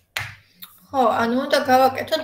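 A short sharp click near the start, then a woman speaking from about a second in.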